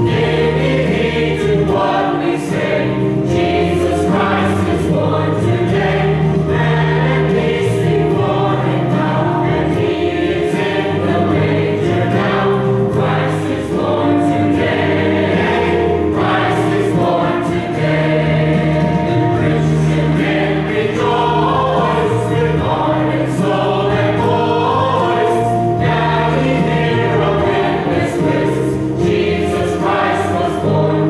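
Mixed church choir of men's and women's voices singing a Christmas song in parts, continuously and at full voice.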